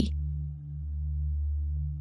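Background music drone: a few low, held tones that dip briefly under a second in and swell back.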